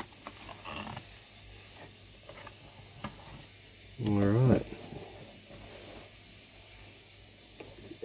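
Quiet handling of cardboard toy packaging, with faint rustles and small taps as an inner box is lifted out and turned over. About four seconds in, a man's voice makes a short wordless sound lasting about half a second.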